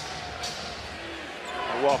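Basketball being dribbled on a hardwood arena court, a run of low bounces.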